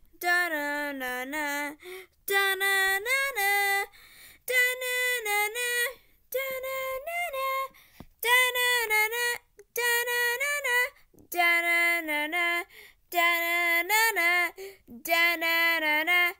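A child singing a wordless 'da na na' theme tune unaccompanied, in about nine short phrases of a second and a half to two seconds each, with brief breaks between them.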